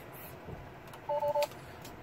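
Tesla Model 3 seat-belt reminder chime: one quick run of two-tone beeps about a second in, sounding because the driver's belt is unfastened.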